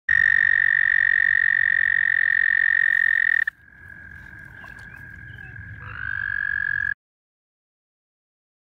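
American toads giving their long, steady, high breeding trill. One close, loud trill stops about three and a half seconds in, while a second, fainter and slightly lower trill carries on, swells and rises a touch in pitch, then cuts off suddenly near the end.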